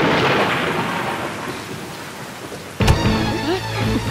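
A thunderclap rumbling and fading away over a steady hiss of heavy rain. Nearly three seconds in, a sudden sharp hit lands, and dramatic film music comes in over the rain.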